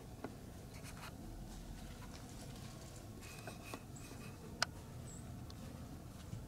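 Faint rustling and scratching with a few small, scattered clicks over a low, steady outdoor rumble; one sharper click stands out about four and a half seconds in.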